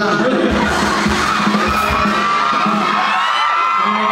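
Concert audience screaming and cheering, many high voices overlapping in a shrill, wavering mass, with a few low thumps in the first two seconds.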